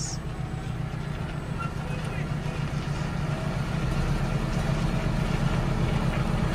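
Diesel engines of a telehandler and a tractor running, heard from inside the telehandler cab as a steady low hum that grows slowly louder.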